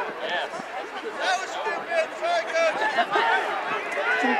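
Several voices shouting and calling out at once during a rugby sevens game, overlapping so that no words come through.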